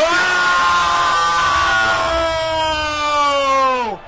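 A male football commentator's long goal shout: one sustained yell held for about four seconds, its pitch slowly sinking and then dropping away sharply at the end, calling a goal just scored.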